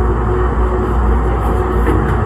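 Siemens S200 light-rail car of Calgary's CTrain, a steady low rumble with a constant mid-pitched hum over it.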